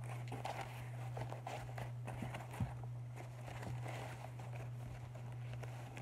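Soft rustling and small handling knocks of a white cloth wrap and packing being handled close to the microphone, with one sharper knock about halfway through, over a steady low hum.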